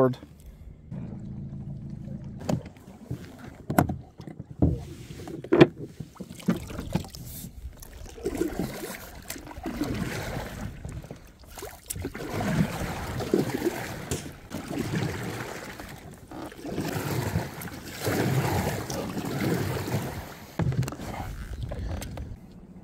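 Kayak pushing through a floating mat of debris: a few sharp knocks in the first several seconds, then a long run of scraping and rustling along the hull.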